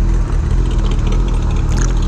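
Sport motorcycle engine running steadily at low speed, with a heavy low wind rumble on the microphone.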